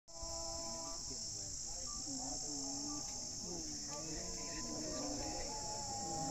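A steady, high-pitched insect chorus that never lets up, with people talking faintly underneath.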